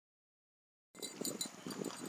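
Dead silence for about the first second, then outdoor background noise cuts in suddenly: an uneven rushing haze with scattered small clicks.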